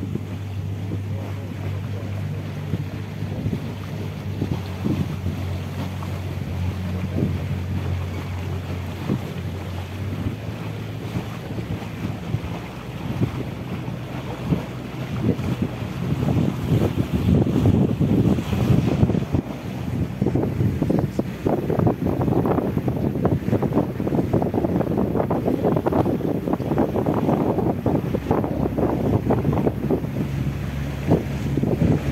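A boat's engine hums steadily at low speed. From about halfway through, wind buffets the microphone and water splashes past the hull, growing louder as the boat moves out into open water.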